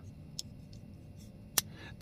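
Ruike M662 titanium frame-lock folding knife being closed: a faint click about half a second in, then one sharp click near the end as the blade drops shut.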